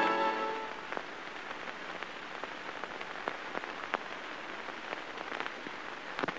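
A held music chord fading out in the first second, then a steady low hiss with scattered faint clicks and pops, the surface noise of an old film soundtrack.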